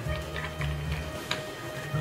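Background music with a low bass line and a few light ticks.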